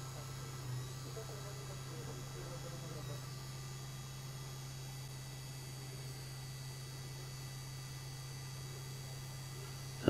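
Small electric motor of a Dapol class 73 model locomotive running steadily with no load, its drive chain disconnected, giving a faint, even low hum.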